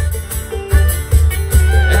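Live country band playing an instrumental stretch between sung lines: electric bass and acoustic guitar over a steady beat.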